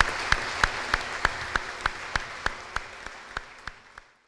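Audience applause fading away, with one nearby pair of hands clapping steadily about three times a second above it.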